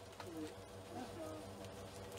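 Faint low cooing of a bird: a few short calls.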